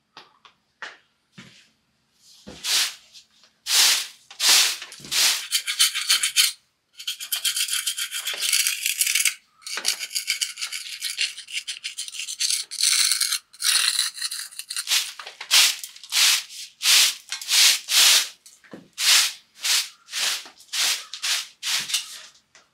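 A thin metal blade scraping over ledge rock and freshly set concrete. It comes as a run of short scrapes, longer continuous scraping through the middle, then quicker strokes about one and a half a second near the end.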